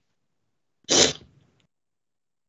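A person sneezing once: a single short, loud burst about a second in.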